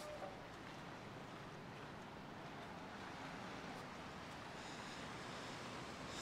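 Faint, steady outdoor background hiss with no distinct events: open-air ambience by the sea.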